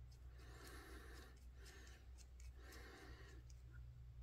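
Near silence: a steady low hum of room tone, with two faint soft swells of noise, one early and one after the middle.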